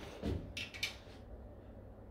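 Dial bore gauge being moved and set into a cylinder sleeve of an engine block: a soft thump, then two short metallic clicks in the first second, faint against a low hum.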